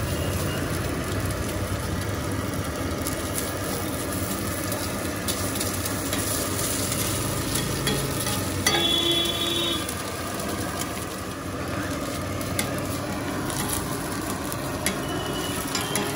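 Halved boiled eggs sizzling in oil on a flat iron griddle (tawa), with a metal spatula scraping and clicking against the iron. A short steady tone of about a second sounds just past the halfway point.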